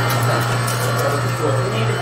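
Steady low machine hum with a faint higher whine: an Emery Thompson batch freezer running with its refrigeration on during a freeze.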